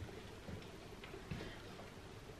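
A few faint, soft thuds and light clicks of sneakered feet stepping onto a yoga mat over a wooden floor during dumbbell side lunges, spaced irregularly.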